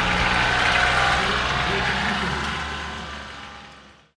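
Engine of a camouflage-netted military off-road vehicle running as it drives slowly past, with voices of onlookers, fading out near the end.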